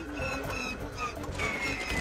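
A failing propeller-plane engine clattering and sputtering after it has been lost, heard under background music.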